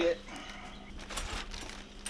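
Unboxing noise: faint rustling of plastic and packaging with a few light knocks as a gas-powered post-hole auger powerhead is lifted from its foam-lined box, over a steady low hum.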